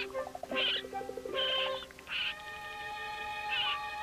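Orchestral film score holding sustained notes, with four short high squeals from a raccoon cub over it.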